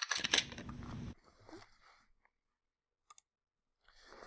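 Camera-shutter sound from the webcam photo booth as a snapshot is taken: a sudden rattling click that lasts about a second and fades. Near the end come a couple of faint mouse clicks.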